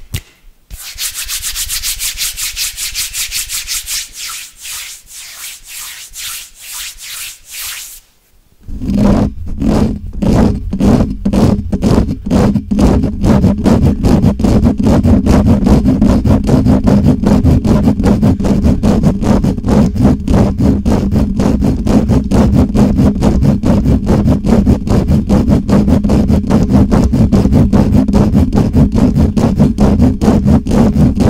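For the first several seconds, a high, hissy rubbing of hands close to the microphone. After a brief pause, fingertips scratch and rub fast and hard right on a Blue Yeti microphone's metal grille: dense, rapid scraping strokes with a heavy low rumble.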